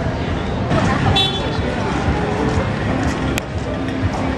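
Busy city street ambience: traffic and the voices of passers-by, with music playing in the background. A brief high-pitched toot sounds about a second in, and a single sharp click near the end.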